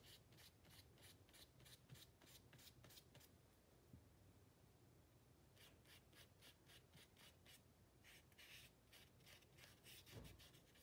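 Faint, quick strokes of a watercolour brush on paper, a few strokes a second, in runs with a pause of about two seconds just before the middle.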